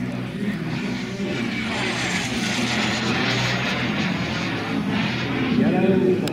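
RC model jet's P180 gas turbine flying past at speed: a rushing jet noise that swells to its loudest about two to three seconds in, then eases off as the jet moves away.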